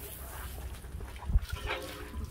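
A short animal call near the end, just after a sharp thump, over a steady low rumble.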